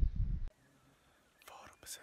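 Wind rumbling on a phone's microphone outdoors, cut off suddenly about half a second in. Near silence follows, then near the end a man's faint whispered breath.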